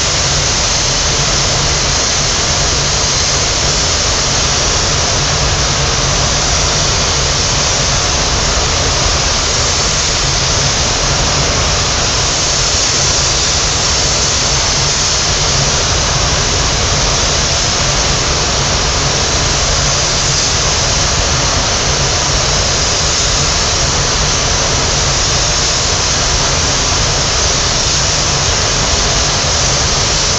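Iwata spray gun with a platinum air cap spraying clear coat: a loud, steady hiss of compressed air atomising the paint, with a low steady rumble of the spray booth's airflow beneath.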